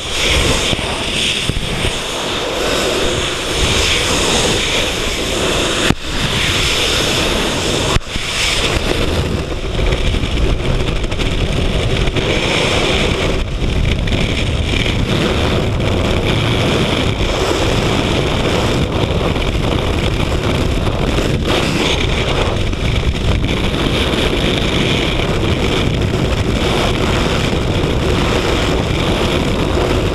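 Steady rush of freefall wind buffeting a helmet-mounted camera's microphone, with two brief dips about six and eight seconds in.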